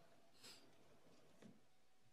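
Near silence: room tone during a pause in a talk, with a faint soft sound or two.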